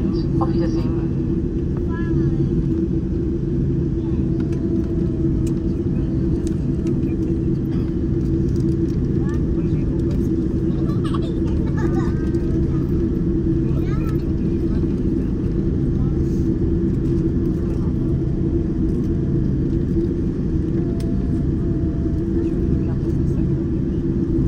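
Steady low cabin drone of a Boeing 747-8 taxiing after landing, its General Electric GEnx engines running at taxi idle, with a constant hum running through it.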